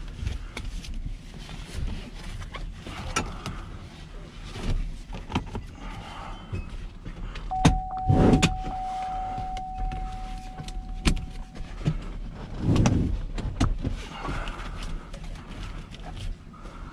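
Seat-belt webbing being pulled and worked through a pickup's steering wheel: rustling and scattered clicks, with a few dull thumps, the loudest about halfway through and another a few seconds later. A steady single tone sounds for about four seconds in the middle.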